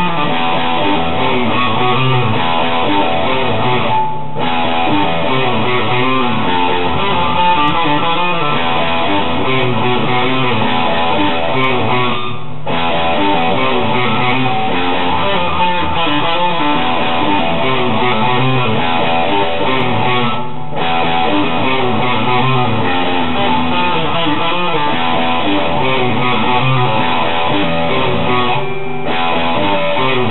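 Epiphone Les Paul electric guitar played through an amplifier: a continuous riff with brief breaks about every eight seconds.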